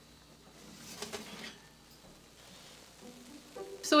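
Faint light clicks and scraping of a metal baking sheet being drawn out of an oven from its wire rack, strongest about a second in.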